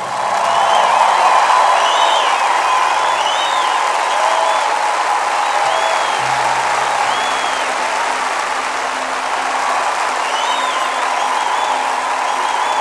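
A large outdoor concert audience applauding and cheering after a song, with short high rising-and-falling whoops and whistles breaking out above the clapping.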